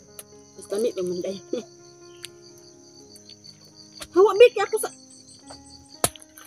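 Insects keep up a steady high-pitched trill at two pitches, the lower one pulsing. Short bursts of voices break in about a second in and again about four seconds in.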